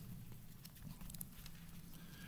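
Quiet church room with a few faint light ticks and rustles, mostly in the middle, from Bible pages being turned to a passage.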